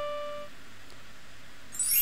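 A sustained electronic keyboard note rings on at one steady pitch and fades out about half a second in, leaving faint room noise.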